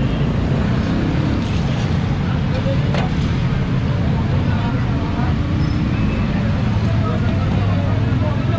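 Steady low rumble of street noise with voices in the background, and a single sharp click about three seconds in.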